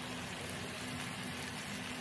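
Tomato-onion masala sizzling steadily as it fries in oil in a pan, with a faint steady hum underneath.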